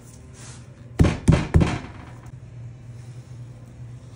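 Three heavy thumps in quick succession about a second in, from the bone-in dry-aged ribeye roasts being handled on a cutting board, over a steady low hum.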